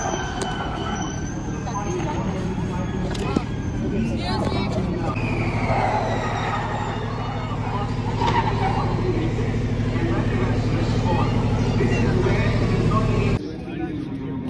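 Formula E electric race car passing: a high-pitched motor whine that falls in pitch as it goes by, with another falling whine about five seconds in. Voices and a steady low hum run underneath, and the sound drops off suddenly near the end.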